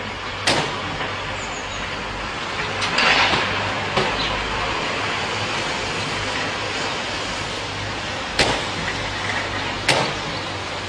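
Car hood being slammed shut: a string of sharp bangs, one about half a second in, a longer clattering one around three seconds, another at four seconds and two near the end, over a steady low hum.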